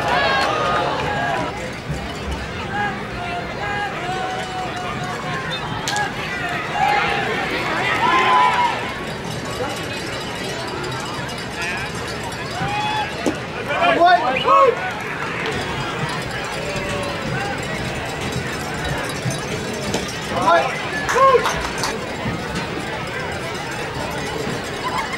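Ballpark crowd ambience: a steady background murmur with scattered voices calling and shouting from the stands, louder calls about 14 and 21 seconds in.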